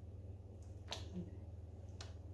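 A hand kneading and slapping thin teff batter for injera in a metal bowl: one sharp wet slap about a second in and a softer one near the end.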